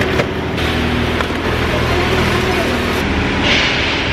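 A car engine idling close by: a steady low drone with a hum of even low tones. A short plastic rustle comes near the end as groceries are handled.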